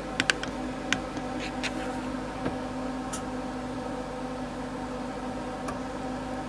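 RV furnace blower fan running with a steady hum, still going after the furnace has been switched off at the thermostat. A few light clicks in the first two seconds from the Dometic wall thermostat's buttons being pressed.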